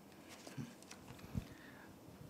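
Papers being handled at a podium microphone: faint rustles and small knocks, with one soft thump about one and a half seconds in.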